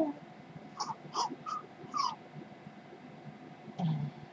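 Four short, high squeaky animal-like calls in the first half, the last one sliding down in pitch.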